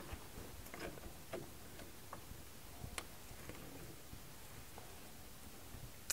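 A handful of faint, irregular metal clicks from needle-nose pliers working a spring hose clamp onto the fuel return hose at the pressure regulator. The sharpest click comes about halfway through.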